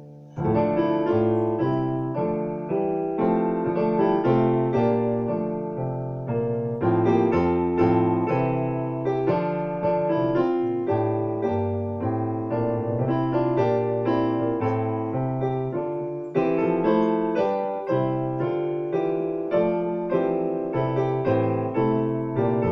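Digital stage piano played with both hands in full chords over a moving bass line, at a steady even pace. A new phrase starts about half a second in, after the last chord has faded.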